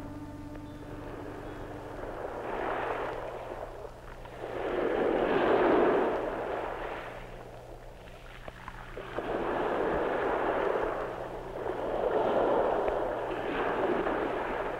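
Waves washing ashore in slow surges, each swelling up and falling away over a couple of seconds, four in all, with the second the loudest.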